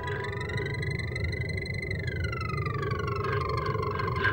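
Electronic instrumental music: several synthesizer tones glide slowly up and down in pitch over a low, steady rumble, with no vocals.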